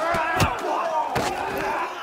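Film brawl sound: many men shouting and yelling through a fight, with a couple of sharp punch and body-impact hits, one about half a second in and another just after a second.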